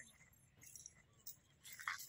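Near silence, with a few faint, light, high-pitched clinks and ticks.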